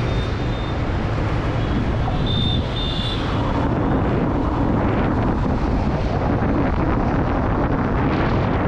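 Steady engine and road noise of a moving bus, with wind rushing across the microphone. Two brief faint high notes sound about two and a half and three seconds in.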